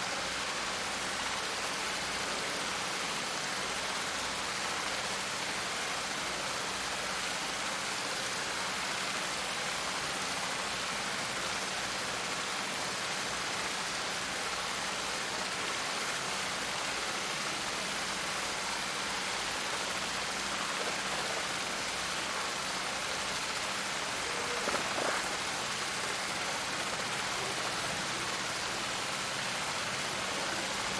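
Steady, even hiss of outdoor background noise with a faint low hum underneath and no distinct events.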